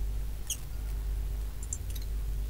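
A few short, sharp clicks of a computer mouse, about half a second in and twice near the end, over a steady low hum.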